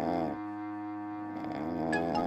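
Background score: a sustained low string drone, with a higher wavering tone that swells near the start and again near the end.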